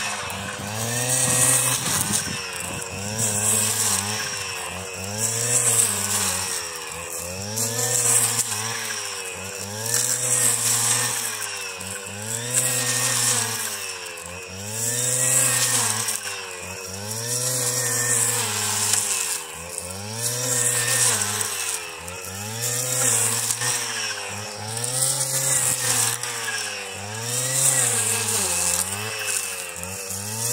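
Gasoline brush cutter running with a metal blade, cutting grass and weeds; its engine note rises and dips about every two seconds as the blade is swept side to side through the growth.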